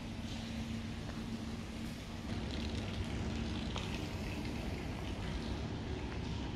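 Steady low outdoor city rumble with a faint hum that stops about two seconds in, and a few faint footsteps as someone walks over rubble.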